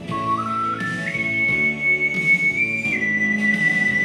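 Soprano ocarina playing a melody over a backing accompaniment: the ocarina enters right at the start with a phrase rising in steps to a long held high note, then drops a little and holds again.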